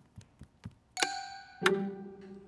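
Cartoon sound effects for a light being switched off: light taps about four a second, then about a second in a sharp click with a bright ringing chime, and a second hit leaving a low held tone as the room goes dark.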